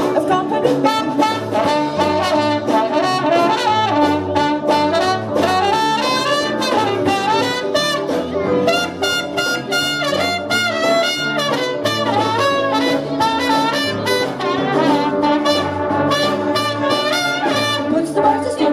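Live big band playing an instrumental jazz passage: trumpets, trombones and saxophones over a drum kit keeping a steady beat on the cymbals.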